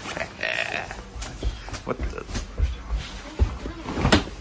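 A man's grunting, non-word vocal sounds, with rustling of snowmobile gear and bumps from a handheld camera.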